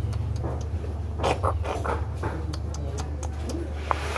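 A kitten eating off a tiled floor: a scatter of short clicks and crunches of chewing, busiest about a second in, over a steady low hum.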